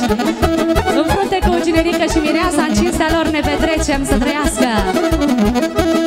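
Romanian hora dance music played live: an instrumental passage with accordion and saxophone carrying an ornamented melody over a steady bass beat.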